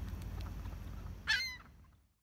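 A single short, loud call from a waterbird about a second and a half in, over a steady low rumble; the sound then fades out to silence.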